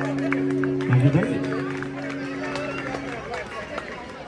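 Acoustic guitar's last strummed chord ringing out and slowly fading, with a low thump about a second in, over background chatter from people.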